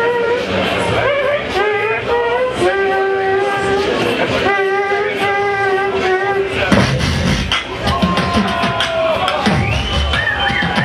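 A female beatboxer performing into a microphone through a PA. For the first seven seconds she holds long vocal notes over quick percussive clicks. From about seven seconds in, deep bass kick sounds and sliding tones take over.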